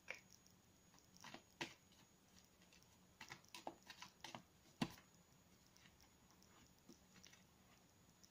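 Tarot cards being handled and shuffled by hand: a scattered series of faint taps and flicks, the sharpest a little before five seconds in, then quieter.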